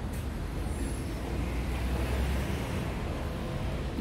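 Street traffic: a road vehicle's low rumble runs past, swelling about halfway through and then easing.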